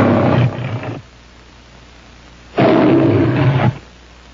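Leo the Lion's recorded roar on the MGM logo soundtrack. One roar tails off about a second in, and a second full roar follows past the halfway mark, ending shortly before the end.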